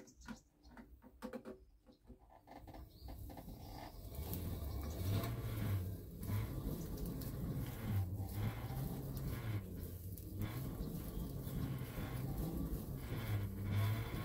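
An exercise-bike flywheel turning a hoverboard hub motor by its tyre under slow pedalling, starting about three seconds in. It makes a low rolling rumble that swells and fades every second and a half to two seconds with the pedal strokes.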